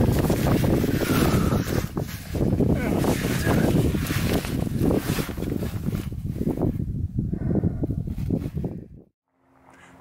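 Loud wind noise on the microphone mixed with scraping and rustling of a person crawling through a tight rock crawlway; it cuts off suddenly near the end.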